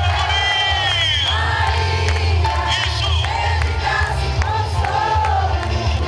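A crowd singing along to amplified music, many voices overlapping, over a steady low hum.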